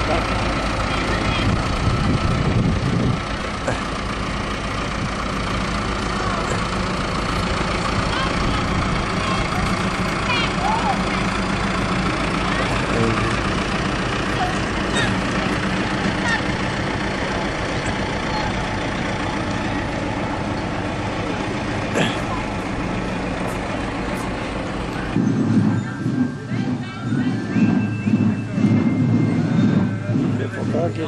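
Farm tractor engine running close by as it tows a parade float, a steady low rumble. About 25 seconds in it cuts off abruptly, giving way to voices.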